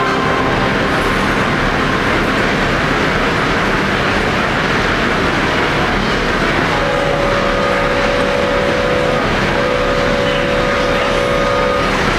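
Wurlitzer theatre pipe organ imitating a train: a steady rushing hiss in place of the music. About seven seconds in, two long held whistle-like tones sound, with a short break between them.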